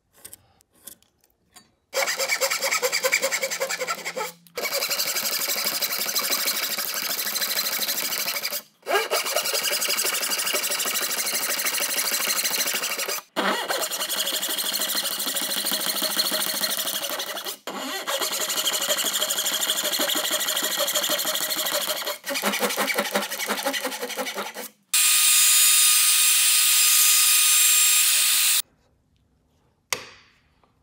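Hand dovetail saw cutting through a hardwood block against a saw guide: a rasping run of quick strokes in several stretches with short breaks between them, the last stretch louder and more even.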